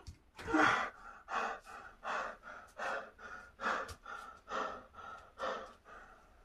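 A man panting hard, about seven loud breaths in quick succession, from the exertion of a set of pull-ups.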